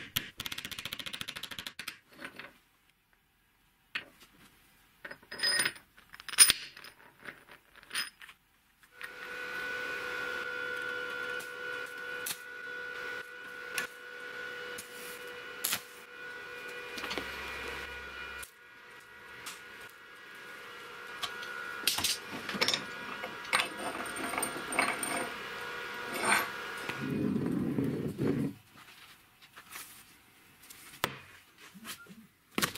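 Workshop metalworking: steel parts clink and knock a few times, then an electric machine runs steadily with a constant hum and intermittent crackle for most of the time, stopping shortly before the end.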